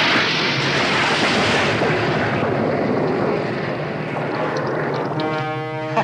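A torpedo fired from a PT boat's deck tube as a sound effect: a sudden loud rushing whoosh that slowly dies away over the boat's low engine drone. Music chords come in near the end.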